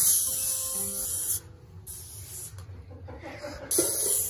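Aerosol can of Lysol disinfectant spraying onto a drum kit: a long hissing burst at the start, a short fainter one in the middle, and another burst starting near the end.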